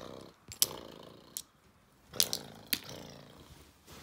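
Handling noise from a handheld phone camera being moved about: four sharp clicks or knocks, with stretches of rough, partly pitched noise between them.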